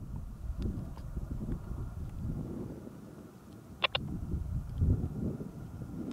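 Wind buffeting the microphone as an uneven, gusting low rumble, with two quick clicks close together about two-thirds of the way through.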